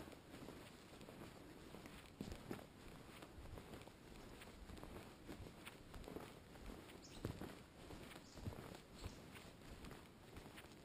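Faint, uneven footsteps of a hiker walking on a soft, mossy forest trail.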